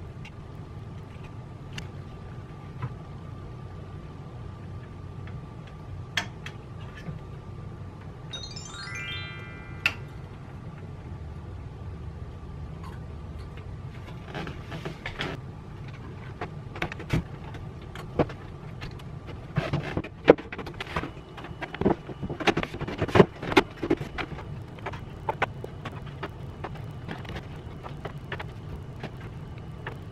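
Scattered clicks and knocks of screwdrivers and metal computer parts being handled while a desktop PC is reassembled after a CPU fan replacement, thickest in the second half, over a steady low hum. A short rising whine comes about nine seconds in.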